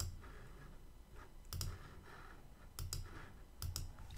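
A handful of sharp computer mouse clicks, roughly a second apart, as word tiles are selected one by one in a language-learning exercise.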